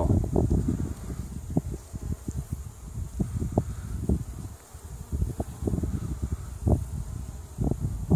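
Honey bees buzzing around a hive entrance and its entrance feeder, under frequent irregular low bumps and rumbles.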